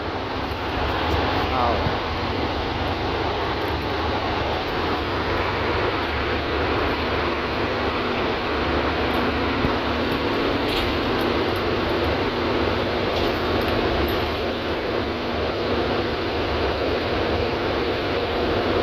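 Steady engine and road noise inside the cabin of a city transit bus on the move, with a continuous low rumble.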